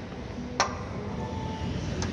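A single sharp click about half a second in as a glass door with steel pull handles is pushed open, over steady background noise.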